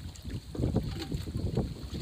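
Wind buffeting the microphone: an uneven, gusting low rumble.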